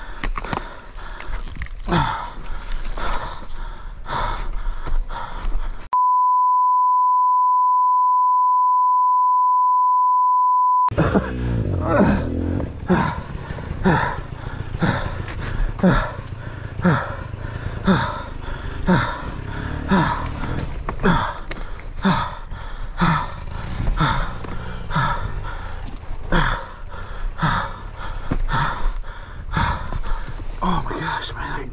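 Fast, heavy breathing of an exhausted rider, with a groaning exhale about once a second. About six seconds in, a steady electronic bleep tone plays for about five seconds.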